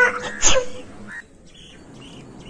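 A high, wailing voice trails off within the first second, cut across by one sharp click about half a second in. A short bird chirp follows, then faint outdoor background.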